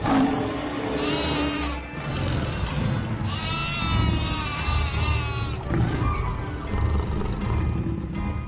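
A cartoon lamb bleating twice with a quavering voice: a short bleat about a second in, then a longer trembling bleat from about three seconds in, over background music.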